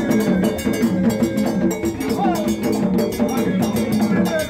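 Live Gagá music: fast, dense percussion with a cowbell-like metal clank, repeated low pitched notes, and voices over it.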